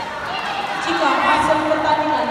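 Several people's voices calling out at once, growing louder from about half a second in.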